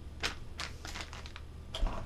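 A series of light clicks and rustles, about half a dozen in two seconds, from soft-plastic fishing lures and their plastic packaging being handled and set down on a tabletop.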